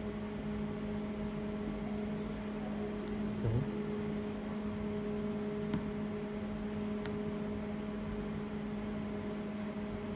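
Steady mechanical hum from the powered-on shock wave therapy machine as it stands idle, with a couple of faint clicks about six and seven seconds in.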